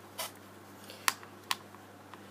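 Three short, light clicks as an amethyst stone and a tarot card deck are handled and set down, the loudest about a second in.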